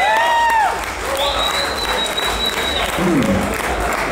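Audience applauding and cheering as a song ends, with the last held notes dying away at the start and a long, high, steady whistle-like tone partway through.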